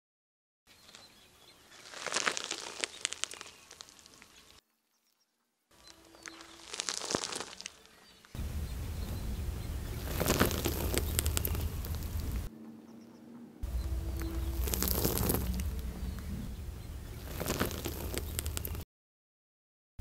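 Corn husks crackling and tearing as they are peeled back from a fresh ear of corn, in two short takes. Then a car tyre rolls slowly over the ear on asphalt, crushing it with crunches and crackles over a low engine rumble. This happens twice, with brief breaks of silence between takes.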